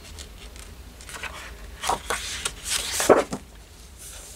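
Sheets of a scrapbook paper pad being turned and smoothed flat by hand: a few short paper rustles and swishes, the loudest about three seconds in.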